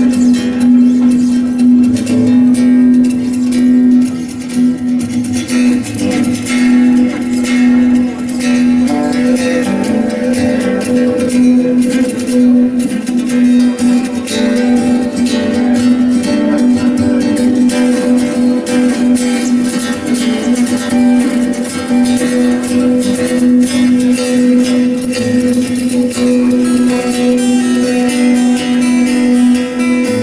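Acoustic guitar improvisation, quick plucked notes and strums played over a steady low drone note.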